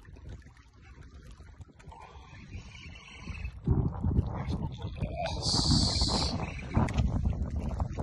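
Wind and handling noise on a phone microphone, rising sharply about three and a half seconds in and staying loud, with a brief high hiss about two seconds later.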